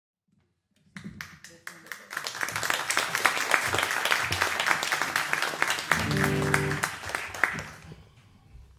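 Audience applause: a few scattered claps about a second in, swelling into full clapping and fading away near the end. A short low held note sounds through it about six seconds in.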